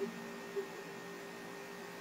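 Faint steady electrical hum with low hiss, the recording's background noise between phrases, with a tiny blip about half a second in.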